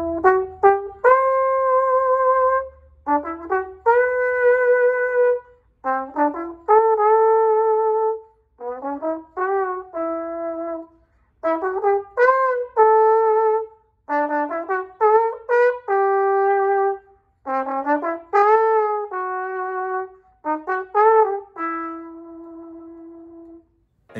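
Jupiter JTB700 small-bore tenor trombone played softly in a ballad-like melody, with a breathy, voice-like tone. The notes come in short phrases with pauses between them, and it ends on a long held note that fades away.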